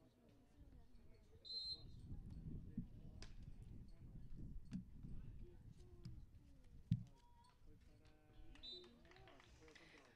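Faint beach volleyball rally sounds: a low rumble of wind on the microphone, faint distant voices, and one sharp hit about seven seconds in, the ball being struck.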